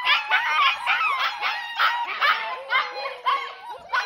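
A litter of German Shepherd puppies whining and yipping together, many short high-pitched squeals overlapping in a constant chorus. It is a little loud.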